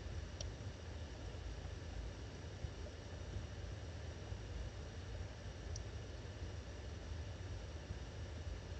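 Quiet room tone: a steady low hum with a faint hiss, broken by two faint short ticks, one just after the start and one about six seconds in.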